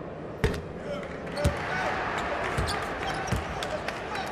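Basketball bouncing on a hardwood court after a made free throw: a few separate thumps about a second apart, over faint voices in a large hall.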